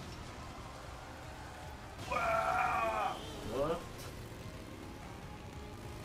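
A high-pitched, wavering vocal cry lasting about a second, starting about two seconds in, followed by a short sliding vocal sound, over a quiet background.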